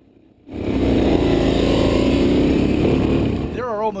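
Police dirt bike's engine running as it rides along a dirt trail, heard through the bike's onboard camera. It comes in suddenly about half a second in and stays loud and steady until narration takes over near the end.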